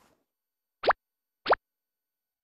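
Two quick upward-sweeping "bloop" cartoon sound effects, about two-thirds of a second apart, each rising sharply in pitch.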